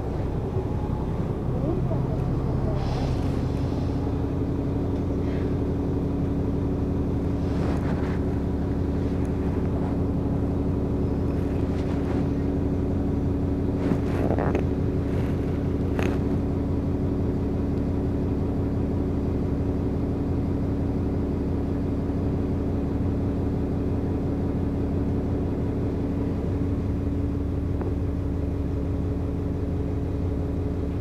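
Bus engine running with a steady hum, heard from inside the passenger saloon, with a few brief sounds from within the bus over the first half.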